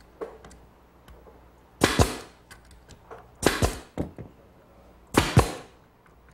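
Pneumatic brad nailer firing three times, about a second and a half apart, driving brads through cleats into redwood standards; each shot is a sharp double crack.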